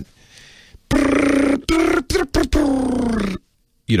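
A man vocally imitating the sound of computer data played from an audio cassette: a drawn-out, pitched vocal noise broken by a few short gaps, sliding down in pitch at the end.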